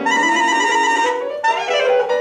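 Alto saxophone playing classical music with piano accompaniment: a long held note with vibrato for about a second, then a quick falling run of notes.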